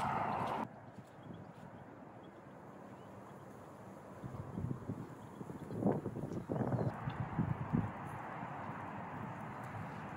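Footsteps on a wet grass path, a few irregular steps that grow more distinct about halfway through.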